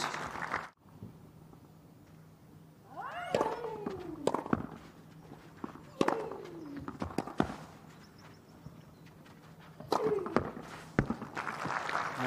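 A tennis rally on a clay court: sharp racket-on-ball strikes about a second or so apart, most of them met by a player's loud grunt falling in pitch. A first burst of strikes runs from about three to seven seconds in, and a second pair comes near the end.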